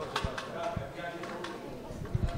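Quiet background chatter of people in a hall, with a few soft low thumps.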